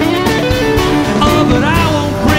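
A live band playing a mid-tempo folk-rock song with a steady beat. Acoustic guitar is strummed under a man's lead vocal, which is sung into the microphone in the second half.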